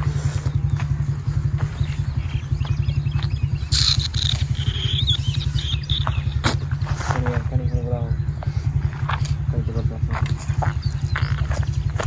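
An engine running steadily at an even speed, with a low, fast, regular pulse throughout. A brief high chirping sound comes about four seconds in, and faint voices follow around seven seconds.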